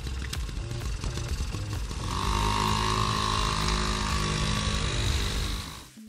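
Small two-stroke engine of a Honda Motocompo folding moped running steadily, under background music; the sound fades out near the end.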